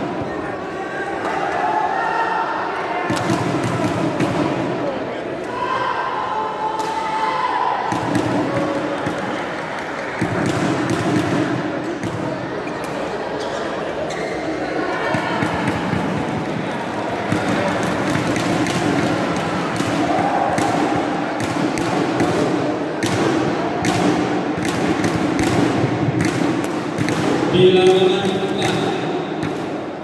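Repeated sharp hits of badminton rackets on the shuttlecock, echoing in a large sports hall, over a steady murmur of voices; a louder voice rings out near the end.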